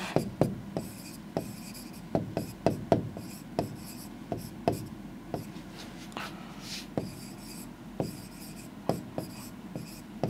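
A pen writing by hand on a board: irregular short taps and scratchy strokes as letters are formed, about two a second.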